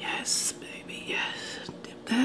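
A person whispering softly, with a short sharp hiss near the start.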